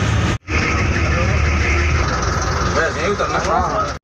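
A bus engine runs with a steady low rumble heard from inside the cabin, along with road noise. People talk over it in the second half. A brief dropout about half a second in comes from an edit.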